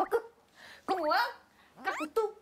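Young women's voices calling out a made-up word, 'kkak-kkuk-ttuk', in three short playful exclamations that rise in pitch.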